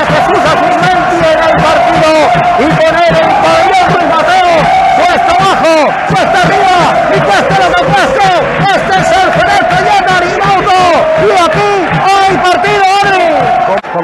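A man's voice shouting excitedly without a break over a futsal goal, with crowd noise from the stands underneath.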